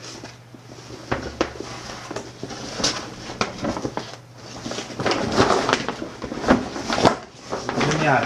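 Stiff, waterproof-coated nylon of a large roll-top bag rustling and crackling as it is handled, with scattered clicks and knocks; the handling gets busier and louder in the second half.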